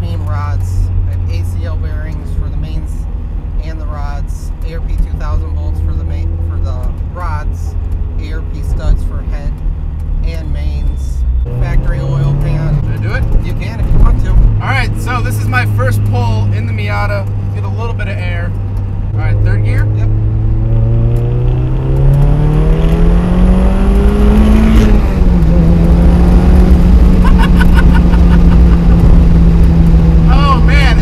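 Turbocharged 1.8-litre inline-four of a 1995 Mazda Miata heard from inside the cabin on the road. It holds a steady note, steps up and back about twelve seconds in, then climbs steadily in pitch for about five seconds under acceleration, drops sharply at a gear change, and holds at a higher pitch.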